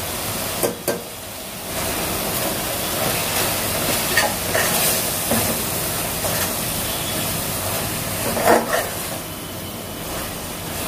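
Onion-tomato masala sizzling in a pot while a perforated metal spatula stirs and scrapes through it, with a few sharp clinks of the spatula against the pot, just before a second in and again past eight seconds.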